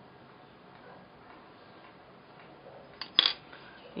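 Faint room noise, then a single sharp click about three seconds in, made while small craft tools are handled on the worktable.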